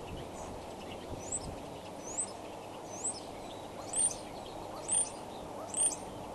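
A bird calling: six short high notes about a second apart, growing louder toward the end, over steady background noise.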